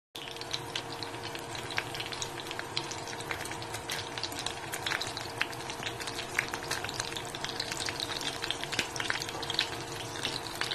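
Spring rolls frying in shallow oil in a nonstick pan: a steady sizzle with many small crackles and pops.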